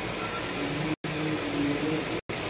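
Steady background hiss broken by brief, complete dropouts to silence, one near the start and one about a second in.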